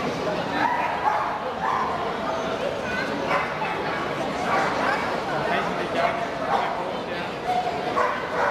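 Dogs barking and yipping in short calls throughout, over the continuous chatter of a crowd.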